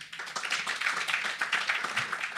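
Audience applauding.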